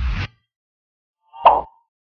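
Sound effects of an animated TV-channel logo sting: a short swish with a low thud at the start, then a single louder pop about one and a half seconds in.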